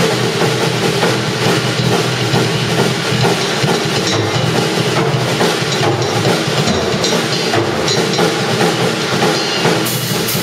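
A drum kit and an electric bass guitar playing live together: a busy, continuous drum pattern over a bass line. A brighter cymbal-like hit comes near the end.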